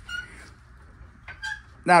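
Hydraulic floor jack being pumped by its long handle, giving two short squeaks, the second lower-pitched and about a second after the first.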